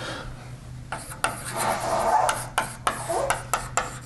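Chalk writing on a blackboard: irregular sharp taps and scratchy strokes, with a longer stretch of scraping about a second in.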